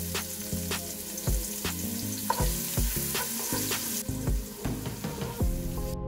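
Sliced onions frying in hot oil in a pot, sizzling, with occasional short clicks as they are stirred.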